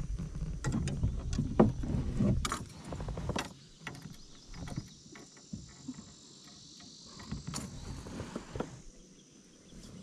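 Knocks, clicks and rustles of handling on a plastic fishing kayak's deck as a bass is held up, with a louder low rumble in the first few seconds and only scattered clicks after that.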